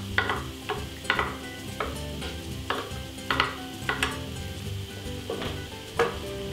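Diced yams and freshly added shallots sizzling in a frying pan. Several short knocks and scrapes of kitchen utensils come at irregular intervals.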